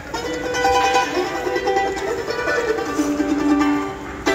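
Live acoustic bluegrass string music starting up, a melody of long held notes over the strings, ending on a long low note.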